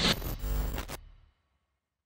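Glitch-style sound effect for an animated logo intro: a short, noisy burst that cuts off abruptly about a second in, followed by dead silence.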